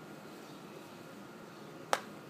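A wooden croquet mallet strikes a croquet ball once near the end: a single sharp knock over a quiet background.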